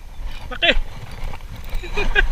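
A man's short exclamation with a falling pitch, over a steady low rumble.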